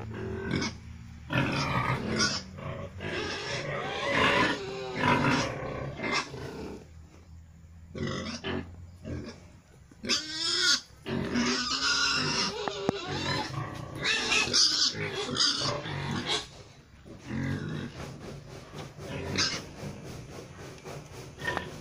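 A young crossbred gilt (Pietrain × Landrace × Large White) calling in a string of short bursts with brief pauses, some calls sliding up and down in pitch.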